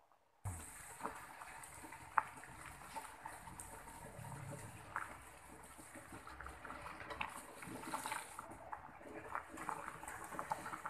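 Water at a rolling boil in a metal pot of guava leaves: faint bubbling with scattered small pops and ticks.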